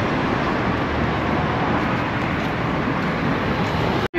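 Street traffic noise: a steady wash of passing cars.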